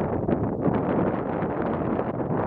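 Wind buffeting the microphone: a steady rush of noise with irregular gusty flutter.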